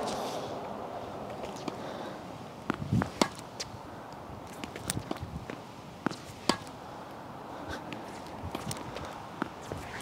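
A tennis ball being struck by a racket and bouncing on a hard court during backhand drop shots: a series of sharp pops a second or two apart, over a steady low hiss.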